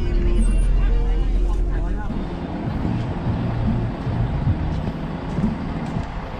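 Low, steady rumble of a tour bus's engine heard from inside the driver's cab, with voices over it. About two seconds in the rumble stops abruptly, leaving people talking.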